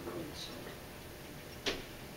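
A single sharp click near the end, against low room tone in a meeting room.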